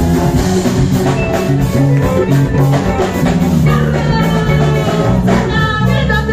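Live band music with a drum kit keeping a steady beat over a bass line; a singer's voice comes in near the end.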